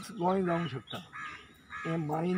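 A crow cawing, with a man's voice speaking.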